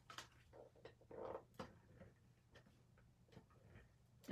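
Faint clicks and a brief scrape from a tape runner laying adhesive on cardstock, along with light handling of the paper.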